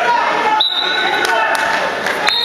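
Crowd voices and shouting in a gym. About half a second in, a referee's whistle gives a single blast of well under a second: a high, steady tone marking the fall.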